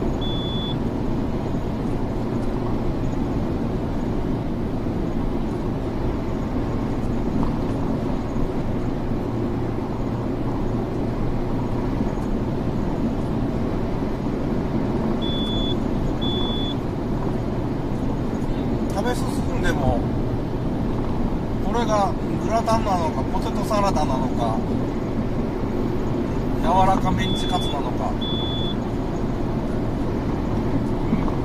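Steady road and engine noise heard from inside a car cruising through a highway tunnel: a constant low hum with no change in pace. A few short, high beeps sound near the start, mid-way and near the end.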